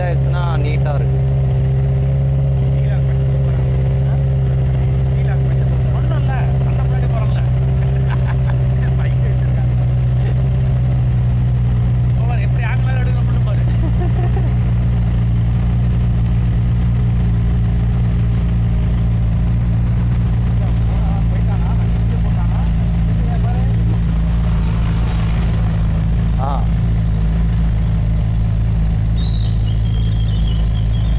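Motorcycle engine idling steadily, with people's voices talking faintly over it.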